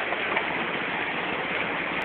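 Steady rushing of a fast-flowing stream, an even hiss of water.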